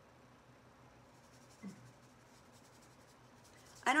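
Very quiet room with faint scratchy strokes of a small paintbrush working paint on paper. A woman starts speaking at the very end.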